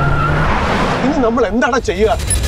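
Car-chase sound effects from an action film: tyres skidding, heard as a loud rushing noise for about the first second, then a fast warbling tone that swoops up and down several times near the end.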